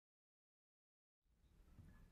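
Near silence: dead silence, then a faint hiss of room tone fading in near the end.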